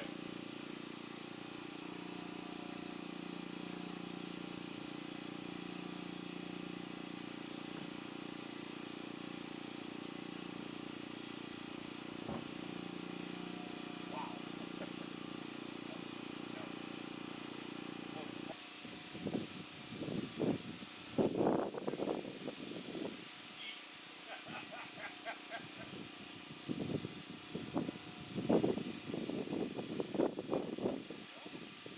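A steady low engine-like drone that stops abruptly about eighteen seconds in, followed by irregular voices and knocks.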